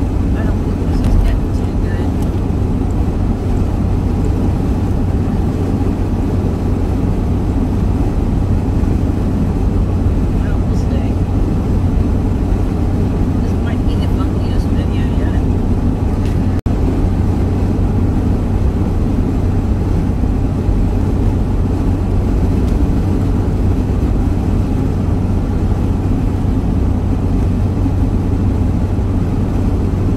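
Steady road and engine noise inside a vehicle cruising at highway speed: a constant low rumble. It cuts out for an instant a little past the middle.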